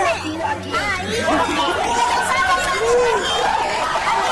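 Speech from a television talk-show clip: several voices talking over one another, with studio chatter behind them.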